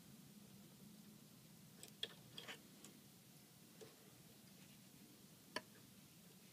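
Faint, scattered small clicks and ticks from hands and threading tools handling the needle area of a Husqvarna Viking 200S serger while its needles are threaded: a sharp click about two seconds in, a few softer ones after it, and another sharp click near the end, over quiet room tone with a low steady hum.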